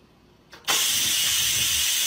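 Electric pressure rice cooker venting steam: a loud, steady hiss that starts suddenly less than a second in and keeps going.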